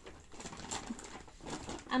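Grocery packaging being handled and rustled: several short soft rustles and knocks, with a few faint low murmuring tones.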